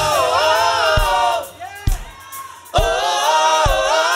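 Mixed choir of men and women singing held chords through microphones, in two phrases with a short lull between them. A low thump keeps a steady beat under the voices, a little under once a second.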